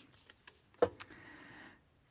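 Tarot cards handled on a tabletop: a couple of light taps about a second in, then a brief, soft sliding rustle of a card being turned over.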